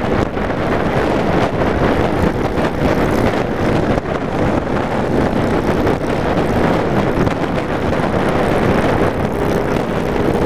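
Wind buffeting the microphone of a camera mounted on a cruiser motorcycle at highway speed, over the steady running of the bike's engine.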